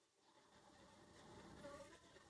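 Near silence, with a faint background sound growing slightly louder.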